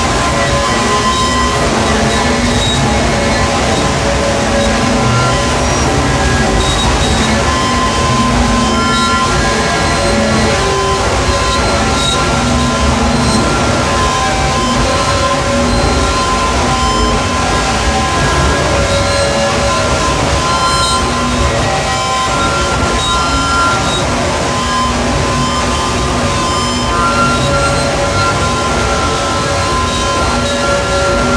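Power-electronics noise music: a loud, dense, unbroken wall of noise with several held droning tones that come and go over it.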